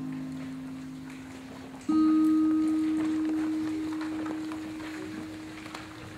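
Guitar notes struck and left to ring: a chord fading out, then a new note struck about two seconds in that is held and slowly dies away.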